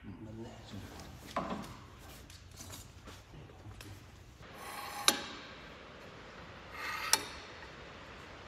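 A gloved hand rubbing and wiping across a cast-iron jointer table, with two sharp clicks about five seconds in and again two seconds later, as a tool is handled on the metal.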